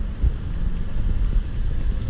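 Steady low rumble of wind on the microphone mixed with the rolling noise of a Segway Mini Pro self-balancing scooter moving across parking-lot pavement.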